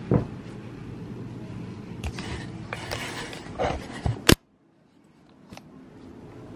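A woven rope basket is handled close to the microphone: a thump as it is set down right at the start, then rustling and light knocks over a steady low hum. About four seconds in there is a sharp click, and the sound cuts out abruptly to near silence before slowly returning.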